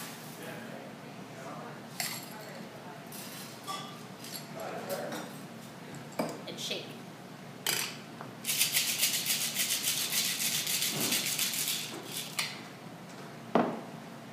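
Scattered clinks of ice and glass, then a Boston shaker (a metal tin capped over a pint glass) shaken hard for about three and a half seconds, the ice rattling rapidly inside. A sharp knock comes near the end as the tin is struck free of the glass.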